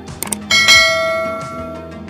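Two quick clicks, then a bright bell ding about half a second in that rings out and fades over about a second and a half, over background music.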